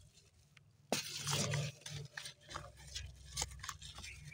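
A hard, dried soil ball breaking apart in rubber-gloved hands: a sudden crack about a second in, the loudest moment, then crumbling and scattered gritty crackles of crumbs.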